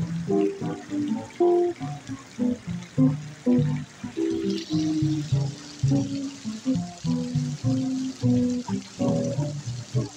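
Plucked upright double bass playing a solo of short, moving notes, with an archtop guitar accompanying; no singing.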